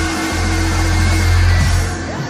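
Live rock band playing, with a loud, sustained low bass note under steady held higher notes; the low note drops away near the end.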